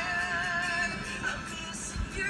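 A male singer holding a note with vibrato through the first second, then moving on to further sung notes, over acoustic guitar.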